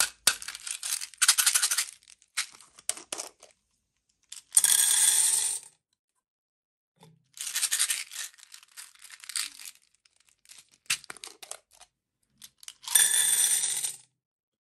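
Small hard candy beads pouring out of plastic baby-bottle candy containers and rattling into a metal muffin tin, in two longer spills about five seconds in and near the end. Between the spills come short clicks and crackles of the plastic bottles and caps being handled.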